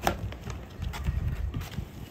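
A plastic carrier bag rustling and a cardboard cake box being handled and opened, a string of sharp crinkles and taps with the loudest right at the start. Wind rumbles on the microphone underneath.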